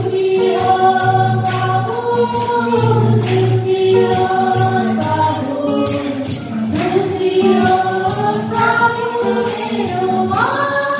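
A small group of women singing a Nepali Christian worship song over a steady musical accompaniment, with jingling percussion marking a regular beat.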